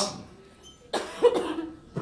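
A person coughing once, a sudden sharp cough about halfway through.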